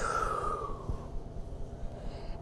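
A long audible breath out through the mouth, a hiss with a whistly tone that slides down in pitch and fades out about a second in.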